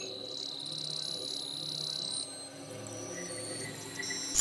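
TV channel presentation music: sustained low synth tones under a high, flickering shimmer that stops about two seconds in.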